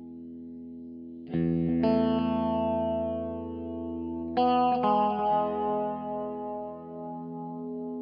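Background music: steady held chords, with a loud struck chord about a second in and another about halfway through, each ringing out slowly.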